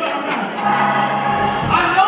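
A man's voice singing long, held notes through a microphone, with more than one voice heard.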